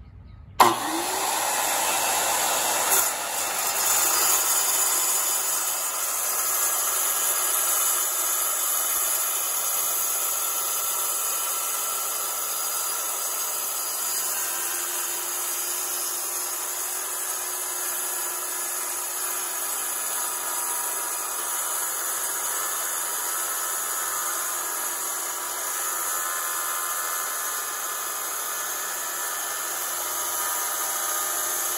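Tile saw switched on under a second in, its motor spinning up with a rising whine, then running steadily as a geode is pushed into the blade and cut open.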